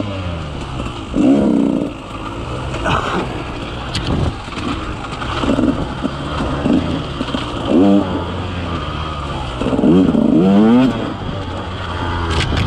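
KTM 150 XC-W's two-stroke single-cylinder engine revving up and falling back in repeated bursts as the throttle is worked on a tight trail, over a steady lower running note.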